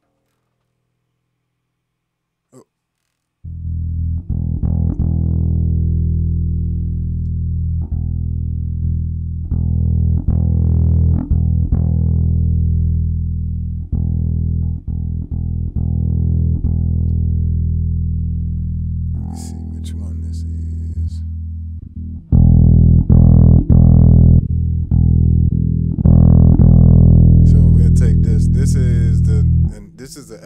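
Electric bass played through a ToneX One amp-modelling pedal set to an Ampeg SVT-style preamp capture: sustained low notes and short riffs that begin about three seconds in, grow louder near the end, then stop.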